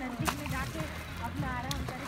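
Indistinct voices in the background, with a brief sharp click near the start.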